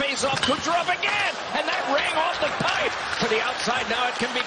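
Ice hockey game sound: sharp clacks of sticks and puck over steady arena crowd noise, with a voice talking over it.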